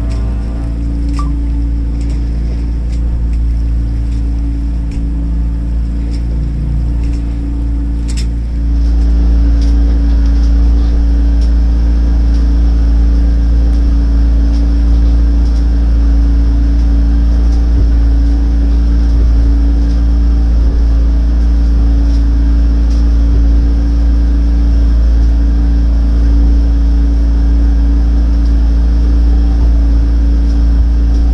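A Heavenly Twins catamaran's motor running steadily under way, a low rumble with a steady hum, getting louder about eight and a half seconds in.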